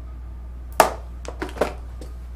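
Three short taps or clicks of makeup tools being handled, most likely a brush and eyeshadow pans knocked against the palette. The first, about a second in, is the loudest. A steady low hum runs underneath.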